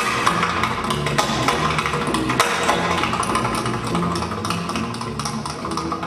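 Jazz combo of vibraphone, piano, double bass and drums playing a blues, with the bass walking steadily underneath and a tap dancer's shoes adding a dense run of quick, sharp taps.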